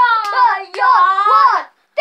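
A young child singing in a high voice, long wordless notes that bend up and down in two phrases, breaking off shortly before the end.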